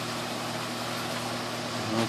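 Steady low mechanical hum with a constant hiss, unchanging throughout.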